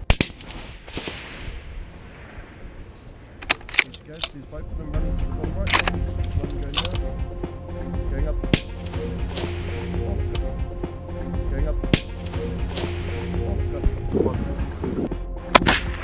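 Hunting rifle shots, each followed by a fading echo off the hills, the first right at the start and several more through the clip. From about five seconds in, background music plays under the shots.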